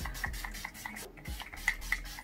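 Quick, even run of short rubbing strokes, about six a second, from a small cosmetic item worked briskly by hand close to the face, with one louder stroke near the end.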